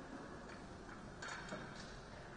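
Steady room hum with a few short, light clicks or taps between about one and two seconds in.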